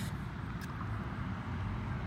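Steady low outdoor background rumble, with a single faint click about half a second in.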